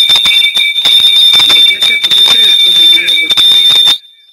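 Audio feedback in a web-conference's sound: a loud, steady high-pitched whistle with a weaker lower tone alongside it, over rough crackling. It cuts off abruptly at the end.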